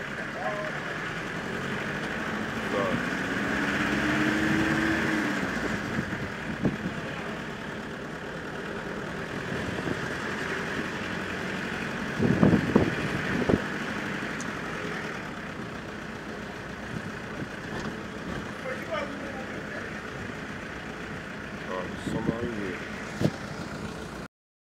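A car running along a street, heard from inside the cabin: a steady engine and road noise, with the engine note rising and then easing off about four seconds in. A few loud thumps come about halfway through.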